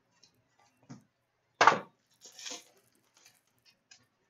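Trading cards being handled: a few soft clicks and rustles, one sharp tap about one and a half seconds in, and a short rustle of cards sliding just after it.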